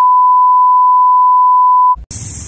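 A steady, loud pure beep tone at about 1 kHz, edited over the soundtrack so that nothing else is heard beneath it, cutting off just before the end.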